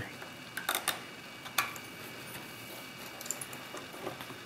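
Faint light clicks and scrapes of a pick working a small metal lever out of the lever pack of an S&G mailbox lever lock: a quick cluster of clicks just after half a second in, another click at about a second and a half, and a couple of small ticks near the end.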